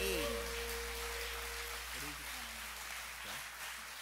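The last chord of an acoustic guitar and mandolin rings out and fades over the first two seconds, under a congregation's applause, a dense patter of clapping that slowly dies away.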